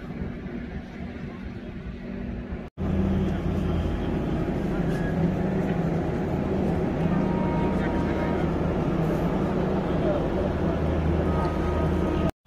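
Steady low mechanical hum of an Indian Railways passenger train standing at a station platform, quieter at first and louder after a short break about three seconds in.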